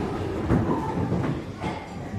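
Footsteps of people running on a wooden floor, with wooden chairs knocking and scraping as they drop back onto them: an irregular clatter.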